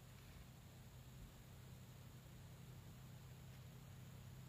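Near silence: a faint, steady low hum under an even hiss.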